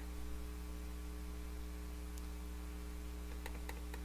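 Steady low electrical hum in the recording, with a few faint clicks near the end.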